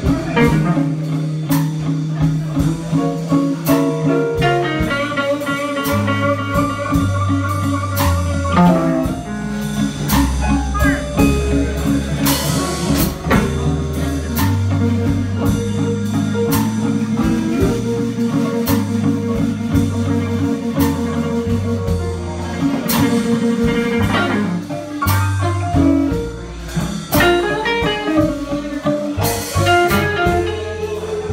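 Live blues band playing, with electric guitars over bass and drum kit.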